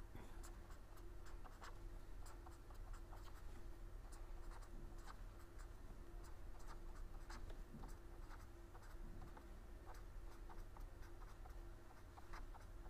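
Faint, irregular scratches and taps of handwriting on a surface, over a steady low hum.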